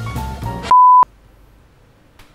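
Background music stops abruptly, and a single loud electronic beep follows at one steady pitch, lasting about a third of a second.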